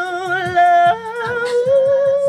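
A man singing a long held note into a handheld microphone. The pitch steps up about a second in and then wavers, over a backing track with a steady low beat.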